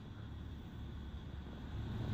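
Quiet, steady room tone of a large store interior: a low, even hum with no distinct events.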